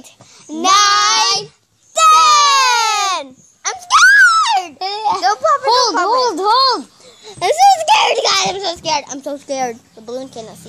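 Young girls' high-pitched voices, loud and excited: a couple of long drawn-out squealing calls, one sliding down in pitch, then quicker babbling and chatter.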